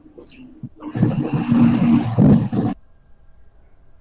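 A garbled, noisy voice coming through an online call, lasting about two seconds from about a second in; no words can be made out.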